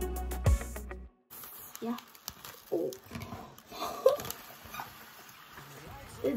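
Background music with a beat that cuts off suddenly about a second in. After it, small foam slime beads pour from a crinkly plastic bag into a plastic measuring cup: a faint rustle with scattered light ticks.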